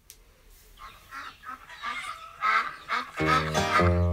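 Recorded farmyard fowl calling, a run of short calls that grows louder, then acoustic guitar music starts about three seconds in.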